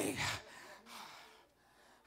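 The end of a man's spoken phrase through a microphone, then a breath drawn in close to the handheld microphone, dying away to near silence in the last half second.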